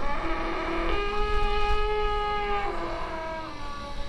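The Grand Éléphant, a giant wooden mechanical elephant, giving a long pitched sound with overtones. It steps up in pitch about a second in, holds, and slides back down after the middle.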